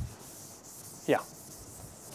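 Board duster wiping a chalkboard, a steady scratchy rubbing. About a second in there is a brief falling voice-like sound.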